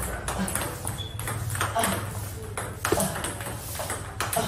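Celluloid-type table tennis ball clicking off rubber-faced paddles and bouncing on the table in a continuous practice rally, about three sharp hits a second, as one player loops backspin balls with topspin and the other blocks them back.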